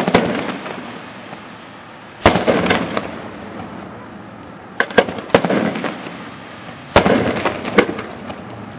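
Aerial firework shells bursting one after another: a sharp report at the start, another a little over two seconds in, a quick cluster of cracks around five seconds, and two more near the end. Each report is followed by smaller cracks and a fading rumble.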